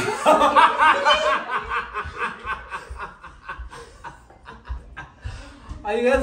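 A man laughing heartily, loudest in the first second or so, then trailing off into softer, breathy chuckles.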